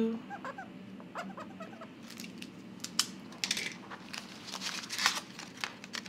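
Marker strokes scratching on a paper challenge card, then banknotes and clear plastic binder envelopes rustling and clicking as they are handled, in short scattered bursts.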